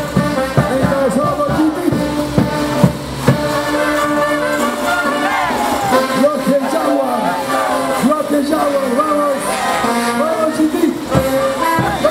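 Caporales band music, a brass melody over drums, with the crowd's voices underneath.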